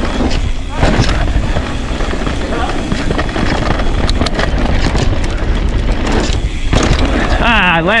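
An electric mountain bike riding fast down dirt singletrack, picked up on an action camera: a loud, steady rush of wind and tyre noise, with sharp knocks and rattles from the bike about halfway through.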